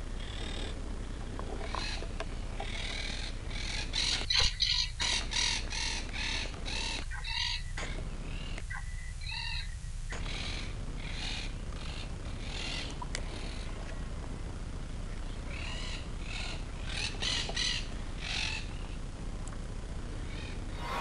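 Birds calling in the trees, a run of short repeated calls that come in clusters, busiest in the first half and again near the end.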